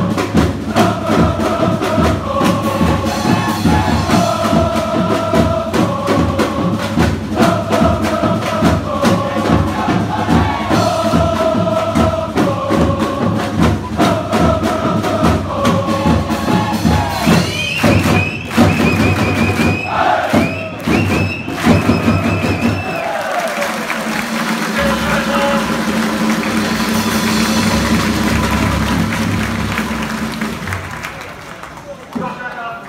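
Football supporters singing a chant in unison over a steady drum beat. Around eighteen seconds in, a few high held notes sound, and a few seconds later the drumming stops, leaving crowd noise.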